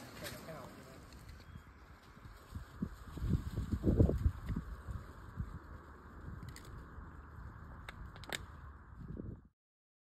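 Faint, indistinct voices over an outdoor hiss, with loud low rumbles around the middle and a few sharp clicks later; the sound cuts off abruptly near the end.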